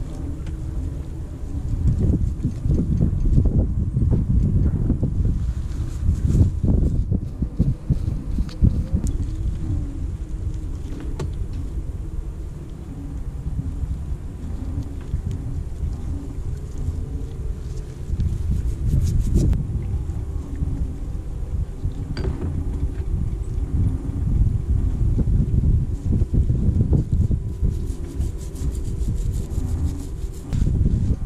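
Wind buffeting the microphone: a loud low rumble that swells and eases unevenly, with a few faint clicks of small metal winch parts being handled.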